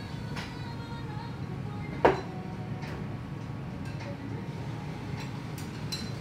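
Soft background music over a steady low restaurant hum, with one short sharp click about two seconds in, alongside a quiet 'mm' as broth is tasted from a spoon.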